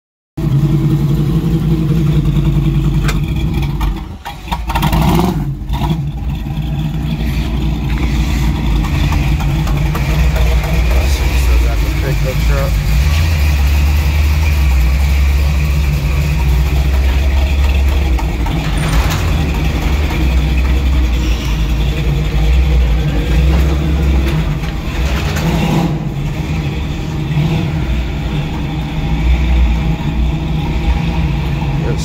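Chevrolet Monte Carlo's 383 small-block V8 running steadily and loudly, with the sound cutting in abruptly about half a second in.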